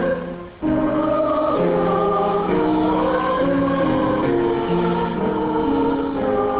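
Mixed choir of men and women singing in parts, holding long notes. The singing breaks off briefly about half a second in, then the next phrase comes in.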